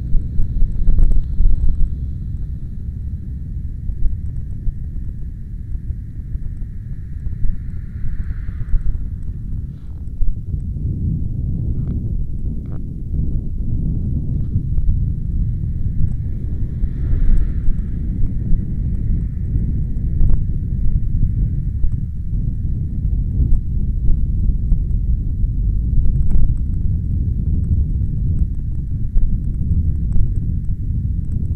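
Loud, steady low rumble of wind and movement on a moving action camera's built-in microphone, broken by frequent irregular knocks and rattles.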